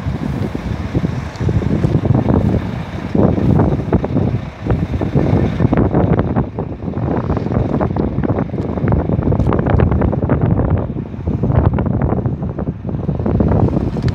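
Wind buffeting a phone's microphone: a loud, uneven rumbling rush that rises and falls in gusts.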